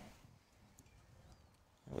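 Near silence: faint outdoor background in a pause between words.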